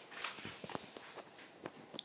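A cat clawing at a corrugated cardboard scratch pad: a string of short, irregular scrapes and taps.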